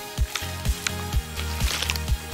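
Background music with a steady beat of low thumps about twice a second, over a wet slurp as a mouthful of ramen-style noodles is sucked up from a bowl.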